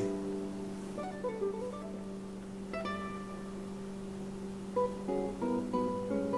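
Background music: acoustic guitar with slow, held plucked notes, moving into a quicker run of plucked notes near the end.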